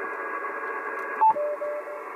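Yaesu FT-857D transceiver's speaker hissing with received band noise. About a second in, a short beep and a brief dropout as the radio is switched from 12 meters to the 15-meter band. After the switch, a Morse code signal comes through as short dashes on one steady tone.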